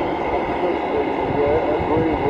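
A 160-metre (1.8 MHz) AM receiver's audio: a steady hiss of band noise and static with faint, garbled speech from a distant station under it.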